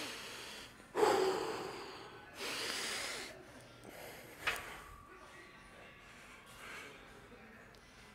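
A man taking three short, hard breaths through the nose, the second the loudest, as he braces under a barbell before a squat. A single sharp click comes about halfway through.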